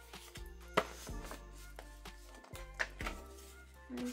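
Paper envelopes and card inserts of a CD album being handled: light rustling with a few sharp taps and clicks as the CD and cards are slid out. Soft background music plays underneath.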